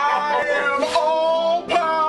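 A man's voice lowered in pitch by inhaled sulfur hexafluoride, making three long drawn-out laughing, wordless calls, with short breaks about a second in and near the end.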